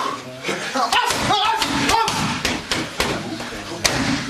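Kickboxing strikes smacking against pads held by a pad holder: a quick series of about a dozen sharp smacks in the second half, the last and sharpest near the end. A man's voice calls out among the first strikes.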